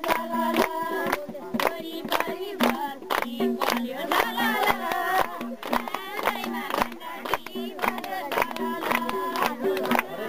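A group of women singing a folk song together over sharp, regular beats, about two or three a second, for a circle dance.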